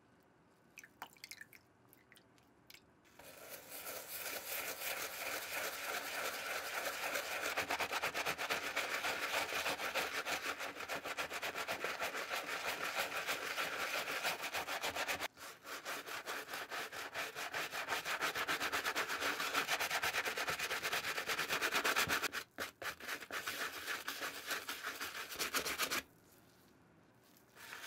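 A few faint drips, then a stiff-bristled wooden brush scrubbing a wet, foamy white leather sneaker in rapid back-and-forth strokes. The scrubbing starts about three seconds in and runs on with two brief pauses, one near the middle and one near the end.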